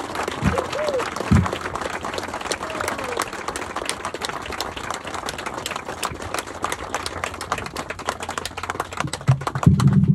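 Audience applauding steadily, with a couple of short cheers from the crowd in the first second.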